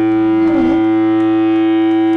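Electric guitar run through distortion and effects pedals, holding one steady droning tone, with a short wavering dip in pitch about half a second in.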